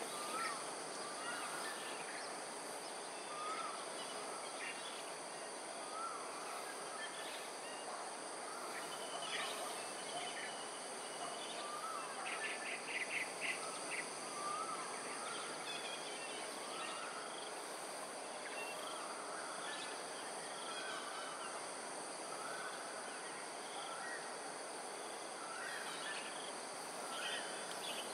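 Outdoor ambience of birdsong over a steady high insect hum. One bird repeats a short call every second or two, and a quick rapid trill of other bird notes comes about twelve seconds in.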